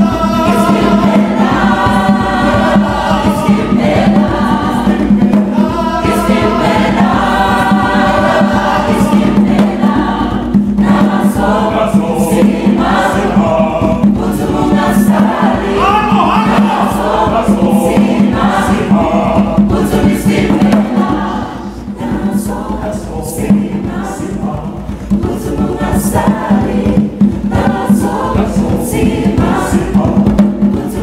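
A mixed choir of men and women singing together in harmony, with sharp rhythmic hits joining in more often during the second half.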